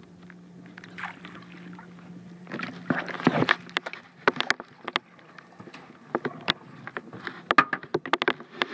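A redfish being landed with a landing net: a burst of splashing about three seconds in, then a run of sharp knocks and clicks as the netted fish and net hit the boat. A steady low hum runs under the first couple of seconds.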